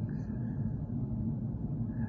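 Steady low background rumble with no distinct events.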